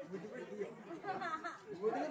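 Only speech: several voices talking quietly, between louder lines of dialogue.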